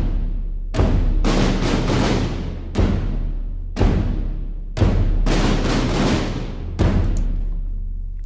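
Layered cinematic trailer drums: orchestral gran casa and sampled orchestral toms doubled with synthesized toms and snares, playing heavy hits roughly once a second. Each hit rings out with a long decay over a steady deep low tone.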